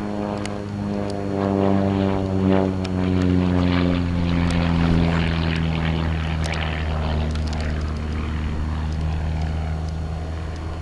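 Van's RV-4 aerobatic light plane's piston engine and propeller droning overhead. The drone falls steadily in pitch over the first several seconds, then holds steady.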